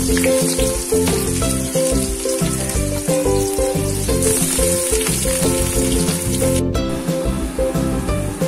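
Sliced onions deep-frying in hot oil in a metal kadai, a steady sizzle, with background music playing over it. The sound drops out for a moment about seven seconds in, then the sizzling carries on.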